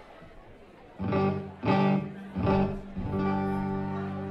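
Live guitar chords at a concert: after a second of crowd noise, three loud strummed chords land about half a second to a second apart, then a chord is left ringing and slowly fades.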